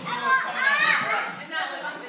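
Young children's excited high-pitched cries and chatter while playing, loudest in the first second and a half.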